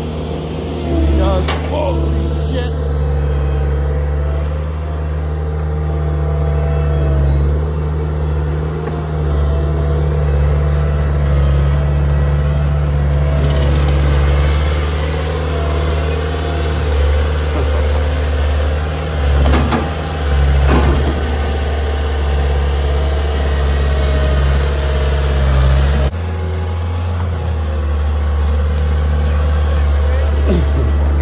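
Diesel engine of a Cat compact track loader running steadily under load as the machine drives and works its log grapple, with a few short squeals over it; the engine note shifts near the end.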